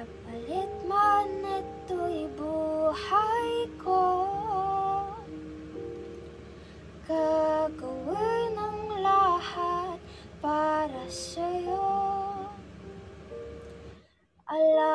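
A young woman singing a melody with held, sliding notes over a backing track of sustained chords, pausing briefly about halfway through.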